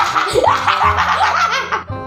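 A boy laughing hard and long, over background music.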